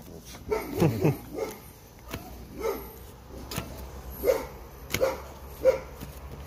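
A dog barking, short single barks repeated every second or so, over the soft taps and crinkles of plastic-bagged comic books being flipped through by hand.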